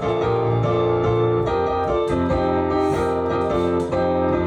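Kawai piano played solo, an instrumental passage of chords that change every half second or so.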